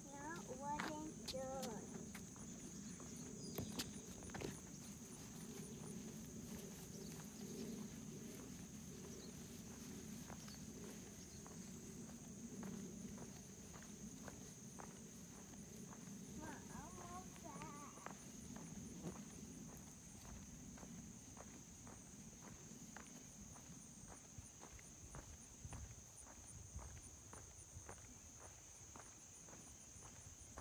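Faint outdoor ambience: a steady high-pitched insect drone, with soft ticking footsteps and brief faint voice sounds about a second in and again around the middle.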